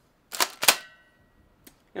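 Pump-action shotgun being racked: two sharp mechanical clacks about a third of a second apart, then a faint click near the end.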